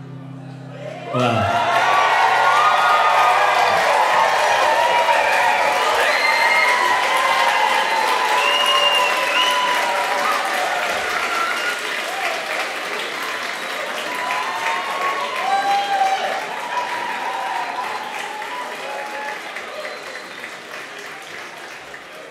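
The song's last guitar chord dies away. About a second in, an audience breaks into loud applause with cheers and whoops, which slowly tails off toward the end.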